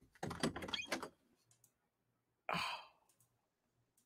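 A quick run of clicks and knocks in the first second, then a single breathy sigh about two and a half seconds in, a person exhaling in amazement.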